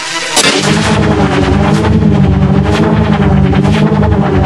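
Heavily effects-distorted logo soundtrack: a steady droning tone breaks about half a second in into a sudden loud crash, then a dense, rumbling, crackling noise with repeated sharp hits.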